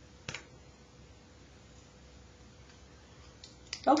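A single sharp click about a third of a second in, over faint room tone; a voice starts right at the end.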